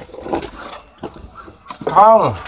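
A short, loud vocal cry that slides down in pitch, just before the end. Before it come handling rustles and a knock about a second in.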